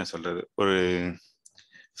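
A man's voice speaking in short phrases for about the first second, then a few faint clicks in the second half.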